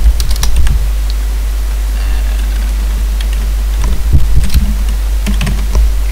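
Computer keyboard typing in short bursts of keystrokes: a cluster near the start, then more around four and five seconds in. A steady low hum runs underneath.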